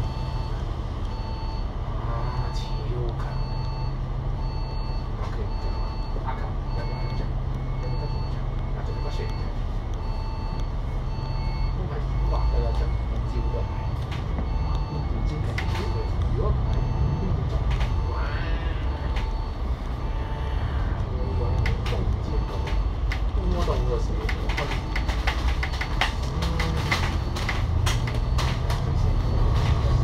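Double-decker bus's Cummins L9 diesel engine, heard from the upper deck, idling at a stop and then pulling away with the automatic gearbox, the rumble rising about twelve seconds in. A short beep repeats about twice a second through the first half, and rattles and clicks come from the body as the bus gets moving near the end.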